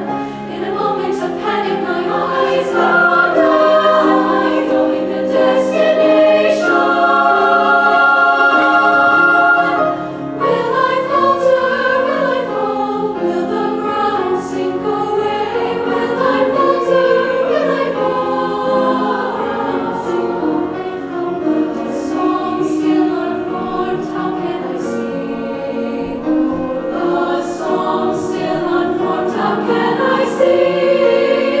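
A youth choir singing in several parts with grand piano accompaniment, sustained chords with clear sibilant consonants, easing briefly about ten seconds in before carrying on.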